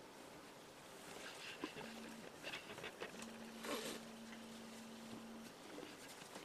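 Faint handling sounds of a nylon mold strap with a metal locking clasp being fitted around a ceramic casting mold: soft rustles and small knocks. A faint, low, steady hum runs through the middle.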